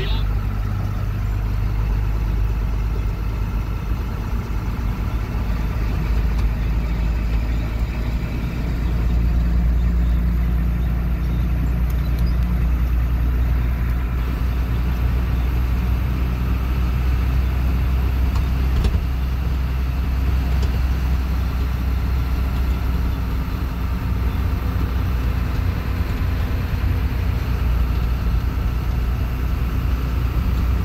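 A truck's engine running steadily under way with road noise, heard from inside the cab: a low, even hum that grows a little louder about nine seconds in.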